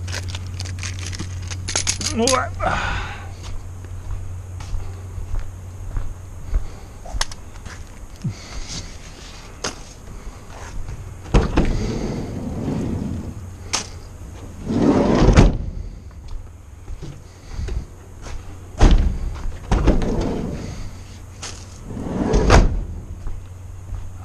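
Rustling and handling noise with a series of irregular thunks and knocks, the loudest coming in the second half, over a steady low hum.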